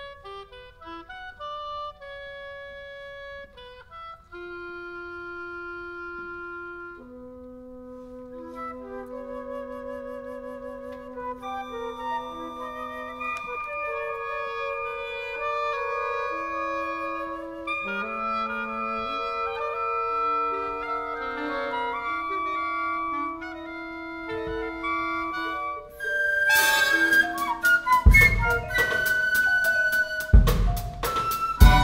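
A wind ensemble playing. Sparse held woodwind notes build into layered, overlapping lines that grow steadily louder. About four seconds before the end, sharp loud percussive hits with a deep low end come in.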